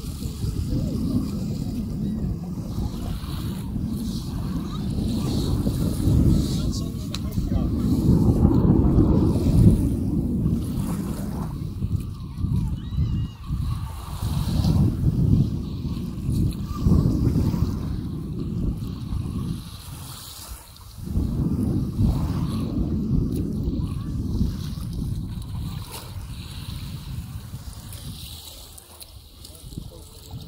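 Wind buffeting the microphone in uneven gusts, over beach-goers' voices and small waves washing onto the sand.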